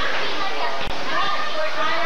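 Crowd chatter: many people talking at once, children's voices among them. The sound briefly drops out about a second in.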